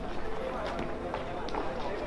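Indistinct chatter of young players' voices outdoors, with a few sharp clicks.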